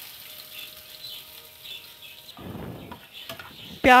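Chopped onion sizzling in hot oil in a frying pan, with a spatula stirring and scraping through it about two seconds in.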